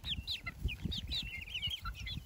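Young chickens peeping as they feed: many short, high chirps from several birds at once, a few each second.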